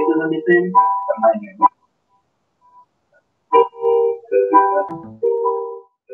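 Triad chords played on a keyboard and heard over a Skype call. A few chords sound, then nearly two seconds of near silence, then several chords struck in quick succession.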